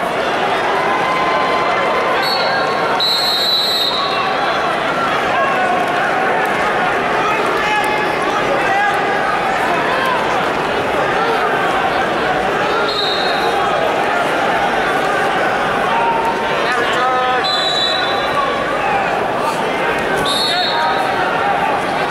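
Crowd noise in a large arena: many voices talking and shouting at once, steady throughout, with short whistle blasts at several points, the strongest about three seconds in.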